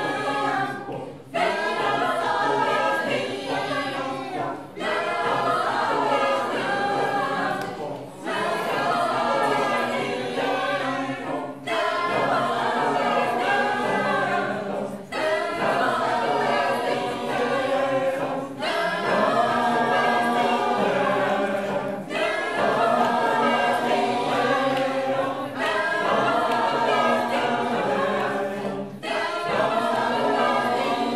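Mixed choir of women's and men's voices singing a cappella, in regular phrases of about three and a half seconds with a short breath-break between each.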